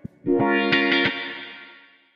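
Background music: a guitar played through effects strikes a chord several times, then lets it ring out and fade away, ending the piece.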